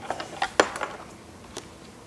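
A few light clicks and taps from a microphone and its quarter-inch cable being picked up and handled in the first second, then quiet room tone.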